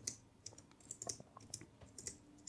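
Faint computer keyboard typing: a quick run of light, irregular keystrokes as a line of code is typed.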